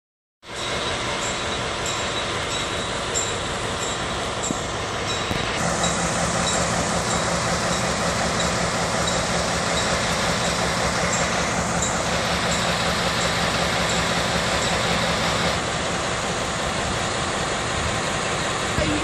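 Class 202 (ex-DR V 100) diesel-hydraulic locomotive running at a standstill, a steady, dense engine sound. From about five seconds in until about fifteen seconds it grows a little louder, with a steady low hum added.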